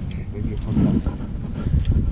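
Wind buffeting the camera's microphone: a low, irregular rumble.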